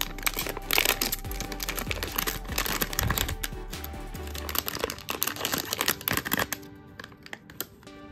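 A foil blind-box bag crinkling as it is pulled open and handled. The crinkling thins out after about six and a half seconds, over steady background music.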